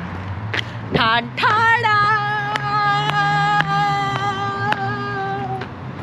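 A singing voice holding one long note for about four seconds, wavering as it starts and then steady, over a low hum, with a few sharp clicks.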